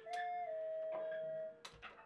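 A single held high note that steps slightly down in pitch about half a second in and ends about a second and a half in, with a few scattered clicks and knocks around it.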